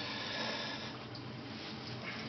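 A man drawing a deep breath in, a steady soft hiss of air: the patient's breath before his chest tubes are pulled.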